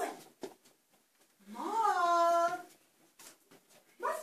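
A person's voice giving one long animal-like call that rises in pitch and then holds, about halfway through. It is an actor imitating an animal cry in a small room.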